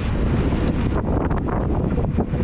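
Steady wind buffeting the microphone on a moving ferry's open deck, with the wash of choppy water beneath.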